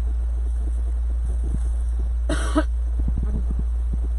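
A single short cough about two and a half seconds in, over a steady low hum, with a few faint knocks of handling.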